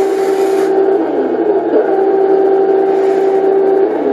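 Turret traverse of a Heng Long 1/16 RC Merkava Mk IV tank: a steady whine that dips in pitch about a second in, holds steady again, then stops near the end as the turret comes to centre.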